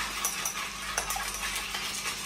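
A bar spoon churning crushed ice in a mojito glass: a steady icy rustle with a few light clinks, about three, of the spoon against the glass.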